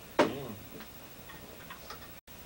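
A short voice sound just after the start, followed by a few faint clicks at uneven intervals.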